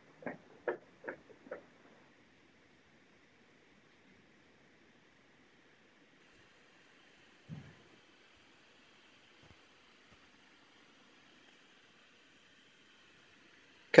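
Quiet room tone with faint hiss. A few short faint sounds, about one every half second, in the first second and a half, and a single soft low thump about seven and a half seconds in.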